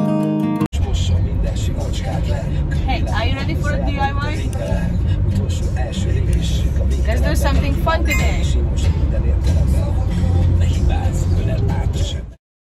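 Steady low road and engine rumble inside the cabin of a moving van, with voices briefly twice. Strummed acoustic guitar music cuts off just under a second in.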